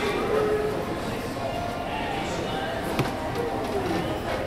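Indoor shop ambience: indistinct voices of other shoppers with faint background music, and a single sharp click about three seconds in.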